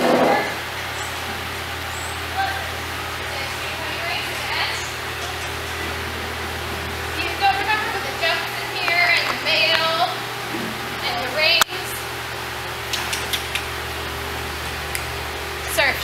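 Indistinct voices talking in the background over a steady low hum, with a sharp click a little past halfway.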